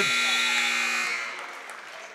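Basketball scoreboard horn sounding the end of the first half. It cuts off about a second in and then fades away in the gym.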